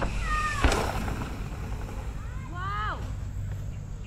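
Mountain bike landing a jump from a wooden kicker ramp: a short falling squeal, then a single thump a little over half a second in as it touches down. About two and a half seconds in, a person lets out a short whoop that rises and falls in pitch.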